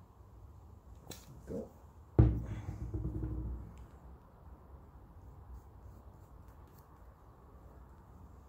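Handling noise on the workbench: a light click about a second in, then a loud thump about two seconds in followed by a low rumble for a second or so, then quiet room tone.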